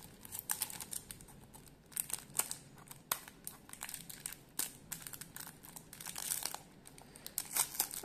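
A clear plastic sleeve crinkling and crackling irregularly as fingers handle it and work its taped flap open.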